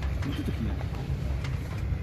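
Wind rumbling steadily on the microphone aboard a sailing yacht under way, with low voices murmuring faintly underneath.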